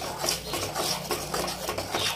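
Metal spatula stirring and scraping scrambled egg and onions around a metal kadai, a continuous rapid rasping scrape, with a low steady hum underneath.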